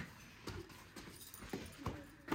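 Faint footsteps on concrete stairs: a few soft, uneven taps about half a second apart, with a brief click at the very start.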